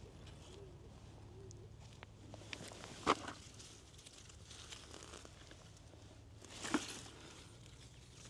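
Potato foliage rustling as a hand works through the plants, with a brief crackle about three seconds in and another near seven seconds. A pigeon coos faintly in the background during the first second or so.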